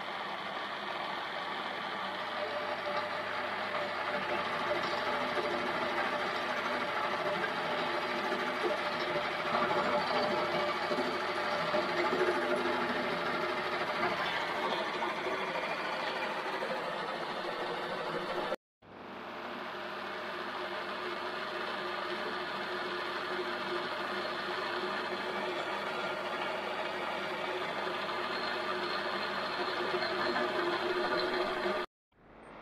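Metal lathe running under power with a steady mechanical whine of motor and gearing. The sound cuts out abruptly for an instant about two-thirds of the way through, then builds back up and runs on steadily.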